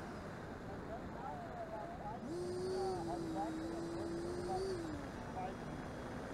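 Electric ducted-fan RC jet whine heard from a distance: a steady tone that steps up in pitch about two seconds in, holds, and drops back near five seconds as the throttle changes, over a faint steady noise.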